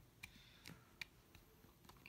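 Near silence with a few faint, separate clicks of a plastic mobile phone being handled, as someone tries to get it open.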